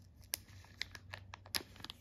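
Thin clear plastic jewellery bag crinkling faintly as fingers open and handle it, heard as a scatter of small sharp crackles that come closer together near the end.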